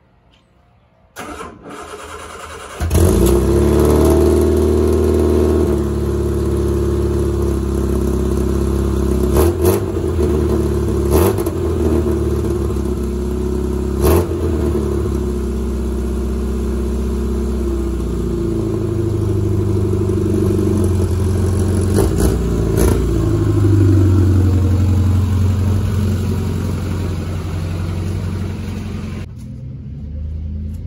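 MG Midget's four-cylinder engine cranked by the starter for about a second and a half, then catching and running at a fast, steady idle. A few sharp knocks sound over it, one of them the car door shutting.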